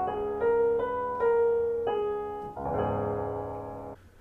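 Piano played as a short run of single notes, one after another, then a fuller chord about two and a half seconds in that rings and fades. The notes set one tone among the notes of a different key, to show how it is heard in relation to them.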